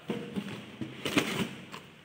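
Small cardboard boxes being handled and set down on a wooden table: a series of light knocks and clicks with cardboard rustling.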